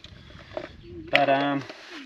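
Speech only: a man says a single word after about a second of faint background noise.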